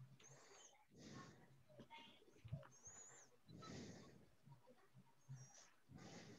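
Near silence: faint room noise over a video call, with three brief, faint high chirps and a couple of soft swells of noise.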